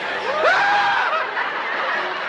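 Sitcom studio audience laughing, with one voice rising into a long held note about a quarter second in that falls away after about a second.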